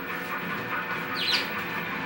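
A budgerigar gives one short, high chirp about a second in, over low background music.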